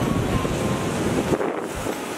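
Wind buffeting the microphone over the rush of heavy surf breaking on rocks. The low rumble of the wind drops away about one and a half seconds in.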